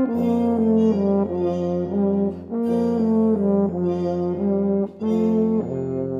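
Brass band playing a moving line of sustained chords over a steady low bass. The sound breaks off briefly twice, about halfway through and near the end, before settling on a softer held chord.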